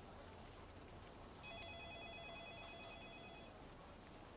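Near silence with a faint, steady high tone lasting about two seconds in the middle.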